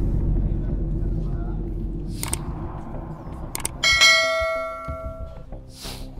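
A deep boom that fades away slowly, then a single struck, bell-like metallic ring about four seconds in that dies away over a second or so.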